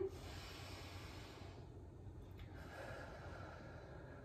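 Slow, deep breathing during a yoga pose: a long, soft breath for about the first second and a half, then a second long breath from about two and a half seconds in, both faint.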